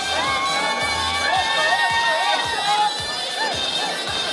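Crowd cheering, with several voices holding long, high, wavering cries, over band music with a drum beat about twice a second.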